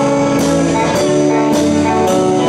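Live band playing: saxophone with electric guitar, bass and drums, a cymbal struck about twice a second under sustained notes.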